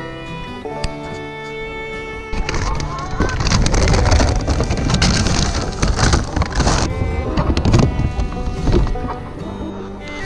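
Background music, overlaid from about two seconds in by loud rustling and crinkling of a plastic feed bag handled close to the microphone, which dies away just before the end.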